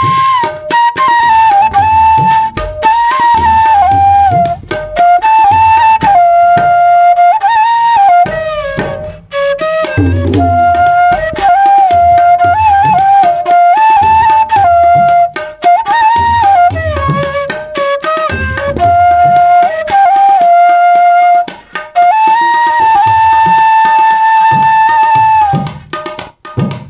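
Bansuri, a side-blown bamboo flute, playing a slow melody that moves in steps, accompanied by tabla strokes, and settling on a long held note near the end.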